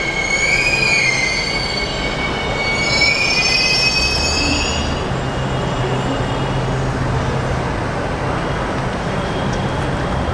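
Delhi Metro train pulling into the platform, squealing in several high tones that slide in pitch as it brakes to a stop over the first five seconds or so. After that a steady low hum and rumble continue as the train stands.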